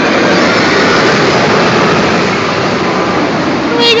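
Steel roller coaster train running along its track, a loud steady rushing noise that holds throughout. A voice exclaims right at the end.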